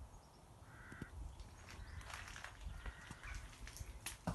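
Faint bird calls outdoors: one short call about a second in and a longer one a little after two seconds, with light clicks and knocks in the second half.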